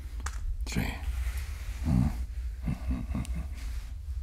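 A playing card flicked with a sharp click near the start, followed by a man's low nasal chuckles and hums, all over a steady low rumble.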